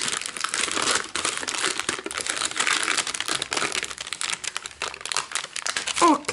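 Baking paper crinkling and rustling as cured silicone molds are peeled off it: a continuous run of fast, dry crackles.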